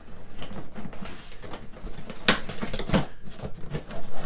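A card scraping and picking at the tape seal of a cardboard box, with irregular scratching and a few sharp clicks and taps, two of them in the second half.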